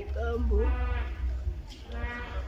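A grieving woman's voice breaking into a quavering, tearful wail about half a second in and again near the end, between broken words, over a low steady rumble.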